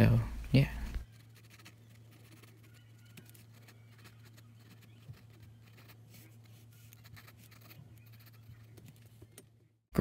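Faint scratching of a pencil sketching on paper, a scatter of small strokes over a low steady hum.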